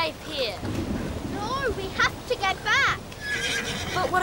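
Horses whinnying several times, high arching calls with a quavering tail, over the steady noise of storm wind and rain.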